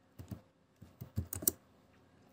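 Computer keyboard keys being typed: a handful of short, irregularly spaced key clicks.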